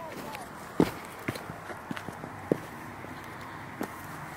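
Footsteps on a rocky trail covered in dry leaves: a handful of short, irregular steps over a steady outdoor background hiss.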